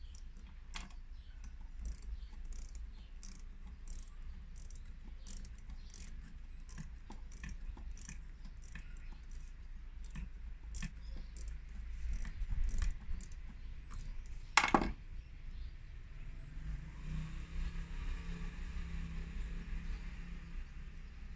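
Small metallic clicks and clinks from hand tools and screws being worked at a car's heater box, including light ticks about twice a second. One loud metallic clack comes just before 15 seconds in.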